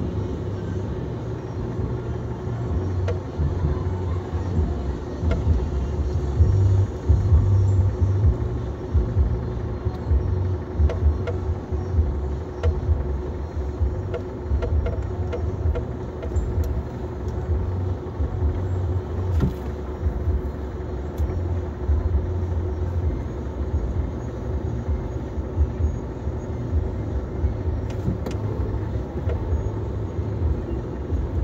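Low engine and road rumble heard inside a car's cabin as it idles and creeps forward in stop-and-go traffic, with a faint steady hum over it.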